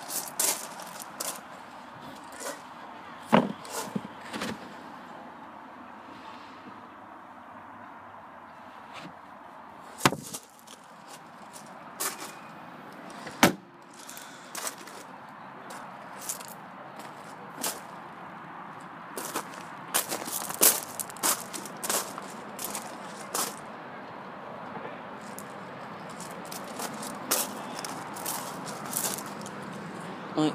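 Scattered clicks and knocks over a steady outdoor hiss, with a few heavier thumps, one of them the hatchback's tailgate being shut, and light crunching steps on gravel around the car.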